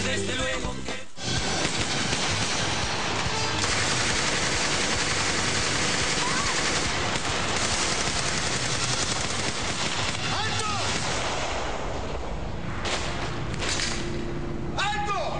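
Dramatized shootout gunfire: a long, dense fusillade of rapid shots that starts about a second in, after the music cuts off.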